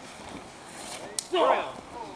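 A single sharp smack a little over a second in, followed at once by a short shout from a person.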